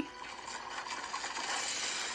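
Soft rustling, scraping noise with no pitch that swells over about a second and a half and then eases off.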